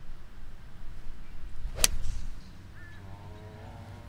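Golf club striking a ball off the fairway: a single sharp crack about two seconds in.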